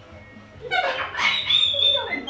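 Sulphur-crested cockatoo vocalising: a string of short pitched calls that starts under a second in and ends in a held high note.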